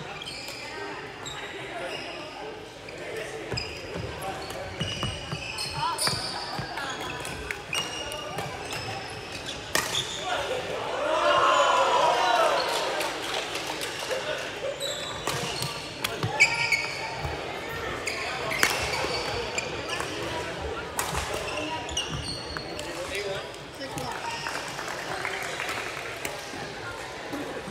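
Badminton rally in a large, echoing sports hall: sharp racket hits on the shuttlecock and short squeaks of court shoes on the floor, with voices. About eleven seconds in, a voice calls out loudly for a couple of seconds.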